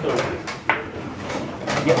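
A single sharp click about two thirds of a second in, from play at a blitz chess board.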